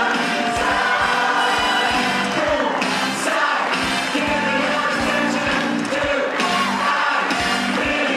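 Music: a group of voices singing together over an accompaniment with a steady beat.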